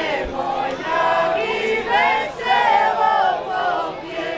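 Folk ensemble singing a Međumurje folk song together, several voices holding long notes that slide between pitches, growing louder about a second in.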